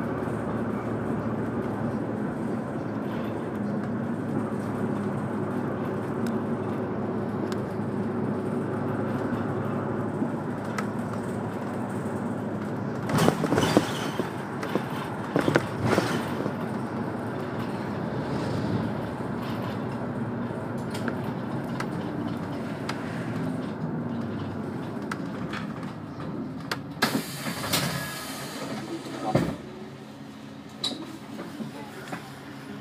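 City bus engine and road noise heard from inside the cabin while driving, a steady drone with a shifting engine note. It has a few loud rattling clatters partway through and again near the end, as it comes to a stop.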